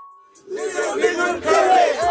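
The song cuts out to near silence for about half a second, then a group of men start shouting together, several voices at once, loud and rowdy.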